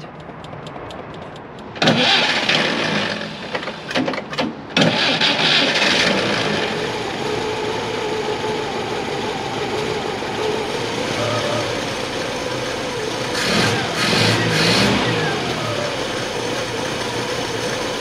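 Moskvich M-412 inline-four engine cranked and catching about two seconds in. It falters briefly just after that, then runs at a steady fast idle through a newly fitted twin-choke carburettor with the air filter off. Near the end there is a short rev. It is a cold first start on the new carburettor, still running not very steadily.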